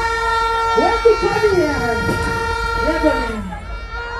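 Sound-system air-horn effect through the PA: a steady horn tone holds and cuts off a little after three seconds, with repeated falling siren-like glides and voices over it.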